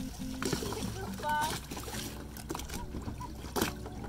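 Water splashing and lapping around snorkelling swimmers, with faint distant voices calling out once about a second in, over a low steady hum.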